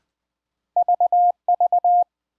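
Morse code (CW) audio tone at one steady pitch, keyed in two groups of three short and one long, the letter V sent twice.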